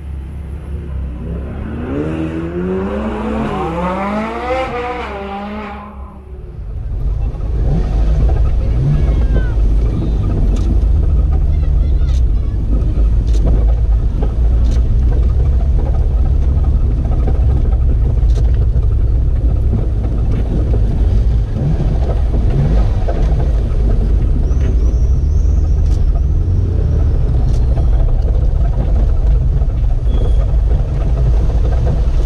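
A sports car engine revs up in a series of quick rising sweeps. Then comes a steady, loud low engine drone heard from inside a Ferrari driving slowly, with a few faint clicks.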